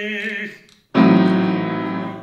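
Opera aria with piano accompaniment: a baritone's held note fades out, and after a brief hush a piano chord is struck about a second in and rings on, slowly fading.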